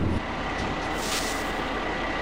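Steady running of a motor vehicle, a low rumble and hiss with a faint thin whine held above it.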